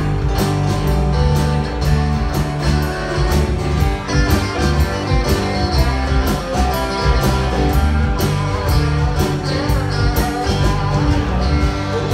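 A live rock/country band playing an instrumental passage without vocals: drums keeping a steady beat under bass, strummed acoustic guitar and electric guitar.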